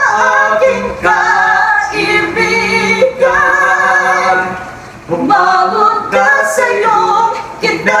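A man and a woman singing a Filipino song together, holding long notes, with a short break about five seconds in before the next line.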